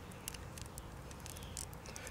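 Faint, light plastic clicks and rubbing as the thigh armor pieces of a small plastic action figure are worked off by hand. The pieces are held by friction tabs rather than snapping in.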